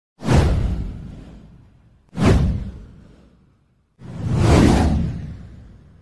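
Three whoosh sound effects from an animated title intro, each with a deep low end. The first two hit suddenly and fade over about a second and a half. The third, about four seconds in, swells up more gradually before fading.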